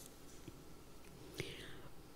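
Quiet room tone with a faint click about half a second in, then a sharper small click and a brief soft rustle about a second and a half in.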